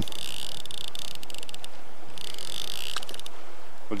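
Steady rush of fast-flowing river water, with spells of rapid clicking from a fly reel's ratchet as line is wound in on a hooked small brown trout, once at the start and again about two seconds in.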